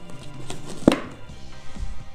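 Background music with held notes, and a sharp snap of a paperboard burger box a little under a second in as the box is handled, with a fainter tap just before it.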